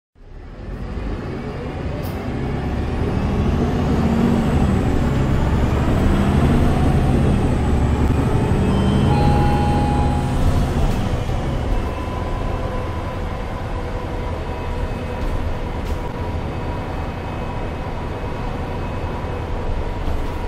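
Cabin sound of an MAN A22 Euro 6 city bus with a Voith automatic gearbox driven hard. The diesel engine fades in and pulls louder under acceleration for several seconds, then eases off about eleven seconds in to a steadier drone with a thin high whine.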